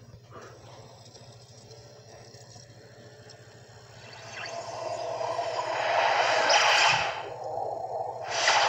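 Whooshing sound effects of the Deluxe Digital Studios logo heard through a television's speaker: a swell that begins about halfway in and builds to a peak, dips briefly, then rises again at the end, over a steady low hum.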